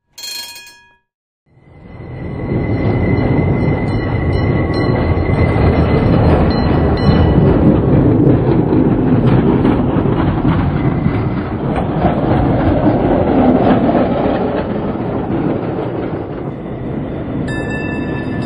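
Vintage electric street tram running along street rails: a loud, continuous rumble and clatter of wheels on track that builds up a couple of seconds in, with a thin high wheel squeal over the first few seconds.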